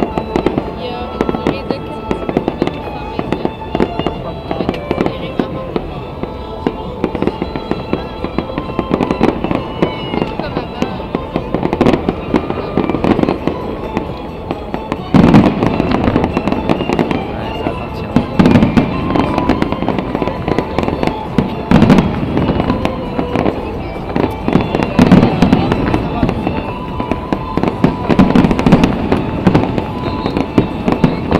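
Fireworks exploding in quick succession, with bursts and crackle heavier and louder from about halfway. Music plays underneath.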